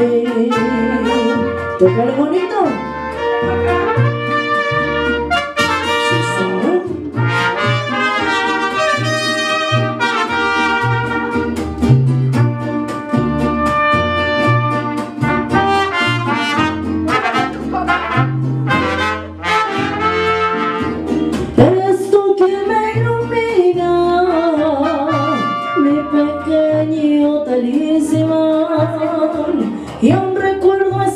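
Live mariachi band playing: trumpets carry the melody over strummed guitars and a steady, rhythmic plucked bass line.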